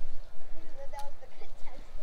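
A toy bow and foam-tipped arrow being shot: one light click about a second in, over a low steady rumble and faint voices.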